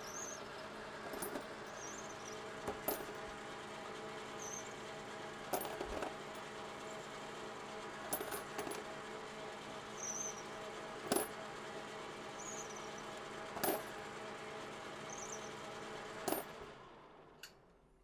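1955 Logan 11x36 metal lathe running steadily with a primer-pocket reamer in its collet, while .308 brass cases are worked on the cutter and set down with sharp metallic clinks every second or two. Short high chirps come between the clinks, and the running fades away near the end.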